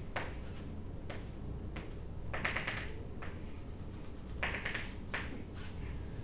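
Chalk on a blackboard: a few scattered taps and short scratchy strokes, over a low steady room hum.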